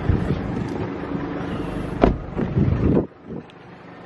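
Handling noise from a handheld camera being moved: rustling and rumble, with a sharp click about two seconds in and a few knocks after it. The sound drops off suddenly about three seconds in.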